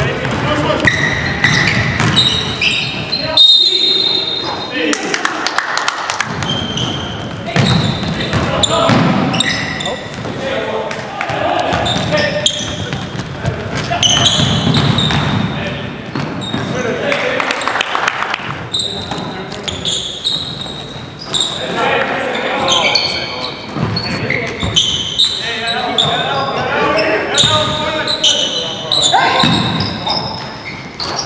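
Indoor basketball game: players' voices calling out over the thud of the ball bouncing on the hardwood gym floor.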